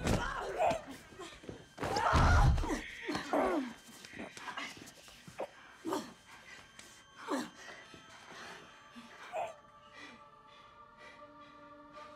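Fight-scene sounds: a heavy body thud about two seconds in, then scattered hits and the strained grunts and choking gasps of a woman struggling in a chokehold. Low sustained music tones come in near the end.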